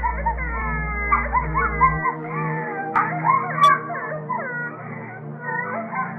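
Many overlapping high, wavering whining and wailing cries that slide up and down in pitch, over a low steady drone, in a muffled, narrow-band old-tape soundtrack. A single sharp click comes a little past halfway.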